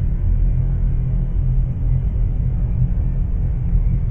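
Steady, loud low rumble of a cartoon flying saucer's rocket engine, a spaceship sound effect.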